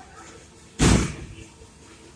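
A single loud bang about a second in, with a short ringing tail that dies away within half a second.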